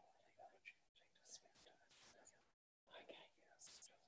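Very faint, quiet talk and whispering among people in a meeting room, dropping out to complete silence twice for a moment.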